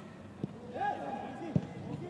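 Players' distant shouts on a football pitch, with a single ball kick about one and a half seconds in.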